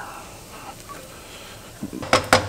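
Chopped garlic and shallots sizzling in oil and butter in a frying pan, a faint steady hiss, with a light knock near the end.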